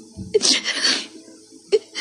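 A person's short, breathy sob of about half a second, starting with a brief catch of the voice, followed by a short sharp click near the end.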